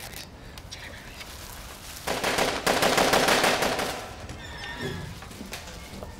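A burst of rapid automatic gunfire starting suddenly about two seconds in and lasting about two seconds.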